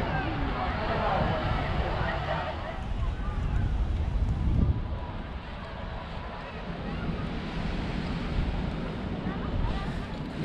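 Wind rumbling on the microphone all through, with the chatter of a beach crowd faintly in the background during the first couple of seconds.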